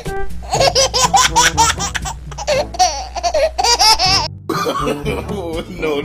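High-pitched laughter in a quick run of pulses over background music with a steady bass. The laughter cuts off suddenly a little past four seconds in, and the music goes on.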